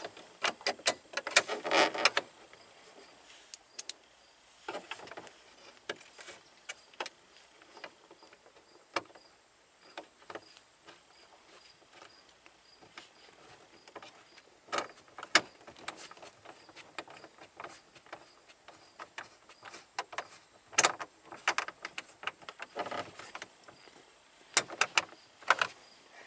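Small clicks and taps of screws and mounting hardware being handled and fastened during a car radio install. There is a quick run of clicks at the start, then single taps and short clusters every few seconds.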